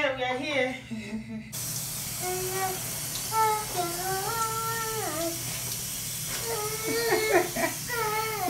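Handheld shower head spraying water onto a child in a bath chair: a steady hiss that starts abruptly about a second and a half in. A young child's voice sounds over it in long, held vocal notes.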